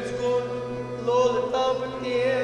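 Kashmiri Sufiana music on harmonium, rabab and a bowed saz: a held melody line wavers over a steady drone and moves to a higher note about a second in.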